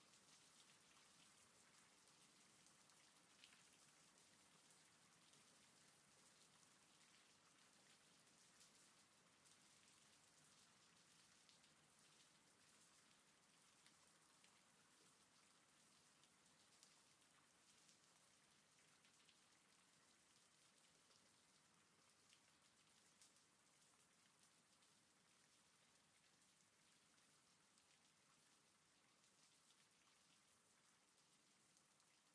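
Very faint background rain: a steady hiss of rainfall with scattered drop ticks, easing slightly quieter toward the end.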